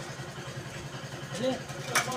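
An engine idling steadily with an even low pulse, and a voice heard briefly in the background about a second and a half in.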